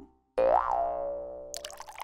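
Cartoon boing sound effect: about a third of a second in, a springy tone bends up and back down in pitch, then rings on steadily and fades out. Near the end a run of short plinking notes begins.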